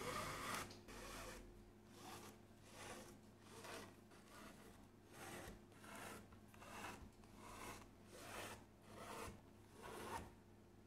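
Faint, repeated rubbing of a bare hand stroking and pressing over stitched vegetable-tanned leather, about one soft swish every three-quarters of a second.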